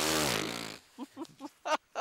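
A man's long, low, rasping groan of effort as he heaves himself up from a bench, fading out about a second in. It is followed by a few short, soft grunts.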